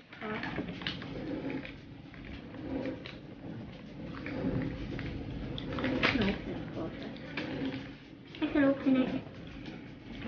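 Paper and cardboard packaging rustling and tearing in short bursts as a child opens a toy blind box, over quiet background talk.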